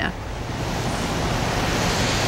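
Wind rushing over an outdoor reporter's microphone in gusty storm winds: a steady noise that swells slightly through the moment, with a low rumble beneath.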